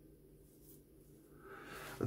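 Near silence: room tone with a faint low hum, and a faint soft noise rising during the last half-second.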